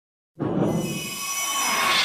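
Intro sting sound effect: a rushing whoosh with several high, steady metallic ringing tones, starting about a third of a second in and swelling in loudness.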